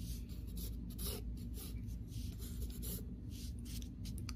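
Graphite pencil scratching across paper in a series of short strokes, drawing the lines of a neck, over a faint steady low hum.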